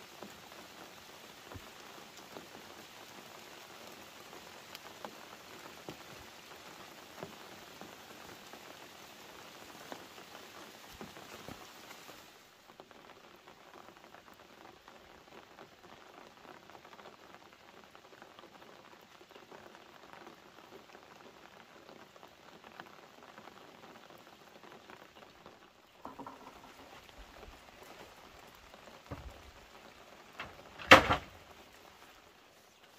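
Faint, steady patter of light rain with small scattered drips; it turns quieter and duller about twelve seconds in, and a few soft knocks come near the end.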